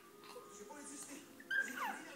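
A quiet stretch, then near the end a brief high-pitched vocal squeal from a baby that glides downward in pitch.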